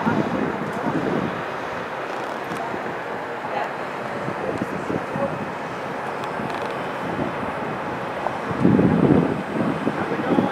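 Wind buffeting the microphone over a steady outdoor rumble, with a louder burst near the end.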